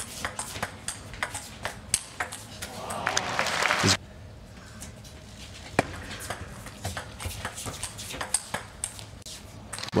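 Table tennis ball being hit back and forth in a fast rally: quick sharp clicks off the paddles and table. A rising crowd noise swells near the end of the rally and cuts off suddenly, then another rally follows with sparser clicks.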